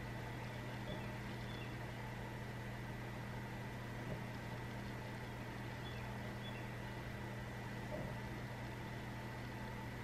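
Room tone: a low, steady hum with a few faint soft clicks, about one, four and eight seconds in.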